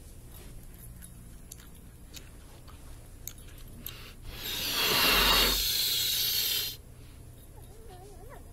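Hologram sound effect of a balloon being blown up: a loud hiss of air starting about four seconds in, lasting about two and a half seconds and cutting off suddenly. A few faint ticks come before it.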